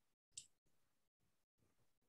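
Near silence: faint room tone that keeps cutting out, with one brief sharp click about half a second in.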